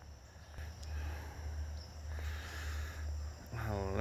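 A low, steady rumble with faint crickets chirping in the background.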